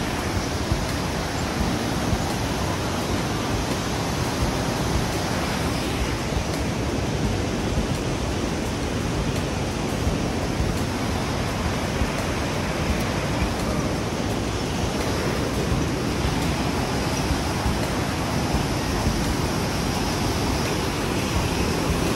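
Steady rushing of a rocky mountain river's rapids, an even wash of water noise that holds without a break.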